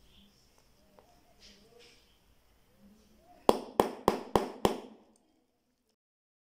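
Hammer striking a hollow leather hole punch five times in quick succession, about three blows a second, driving a hole through a leather strap.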